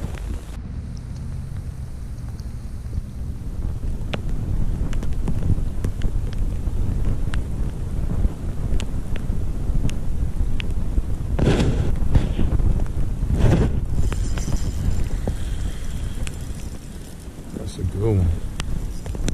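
Wind buffeting the microphone as a steady low rumble, with scattered light ticks of rain landing around it. Two louder rushing sounds come about eleven and thirteen seconds in.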